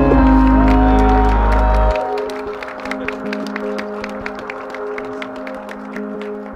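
Music with long held notes, heavy in the bass for the first two seconds, under applause from a small crowd of guests; from about two seconds in, separate hand claps stand out irregularly over the music.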